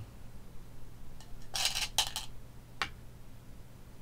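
Go stones clacking as they are handled and set down on a wooden Go board. A short flurry of clicks comes about one and a half seconds in, then a sharp clack at about two seconds, and one more light click just before three seconds.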